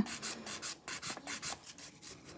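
Hand nail file rasping rapidly back and forth over a sculpted acrygel nail, shaping the surface, about six or seven short strokes a second, dying away near the end.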